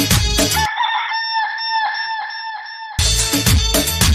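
Dance music drops out under a second in, leaving a chicken sound effect alone: a pitched clucking call pulsing about four times a second for roughly two seconds. The full beat comes back near the end.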